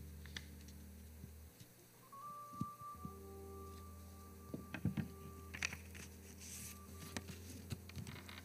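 Paper handling close to a microphone as a greeting card is drawn from its envelope: a few soft crackles and taps, loudest about five seconds in. Under them are a low electrical hum and a thin steady tone held from about two to seven seconds.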